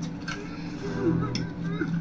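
Quiet film soundtrack heard through a TV speaker: soft background music with a steady low tone, and a few faint short vocal sounds.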